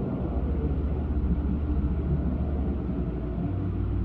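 Steady low rumble and hiss of an old 1950s hall recording in a pause between words, with no voice.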